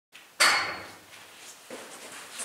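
A sharp knock with a brief metallic ring, then a softer knock about a second later.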